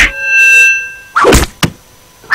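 A loud rock song cuts off, leaving a steady ringing of a few pitched tones that fades within about a second. Then a single thud and, just after, a smaller knock, in the cartoon where albino bats drop onto the stage from the loud music.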